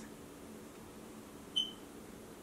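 Quiet room tone with a faint steady hum, broken by one brief high-pitched chirp about one and a half seconds in.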